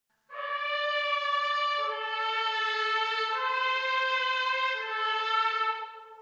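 Instrumental opening of a rock song: a brass section playing four long held chords, each about a second and a half, the chord changing each time before a brief gap near the end.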